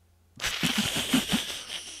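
A man's breathy, wheezing laugh into a close microphone. It starts about a third of a second in, a hissing rush of breath with about five pulses a second.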